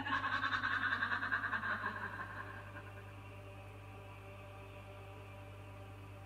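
A cartoon character's high, echoing laugh that fades out over the first two seconds or so, followed by a faint steady low hum.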